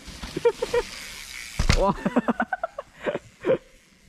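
A mountain bike riding past on a dirt trail, its tyres hissing over the soil, with one sharp thud about one and a half seconds in. Short excited shouts from the riders come over it.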